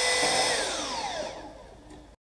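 Cordless drill set on fast, running at full speed with a steady high whine while drilling through an aluminium bracket into a fiberglass nosebowl, then winding down about half a second in, its pitch falling as it fades.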